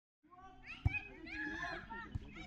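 Children shouting and calling out to each other during play, several high voices overlapping, with one sharp thump just under a second in.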